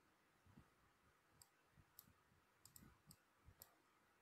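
Near silence broken by about six faint, sharp clicks from a computer mouse, scattered through the middle and later part.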